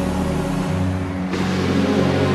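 Synthesizer music: sustained pad chords over a low bass line, with the bass moving to a new note about half a second in and a brighter, airy layer entering just past the middle.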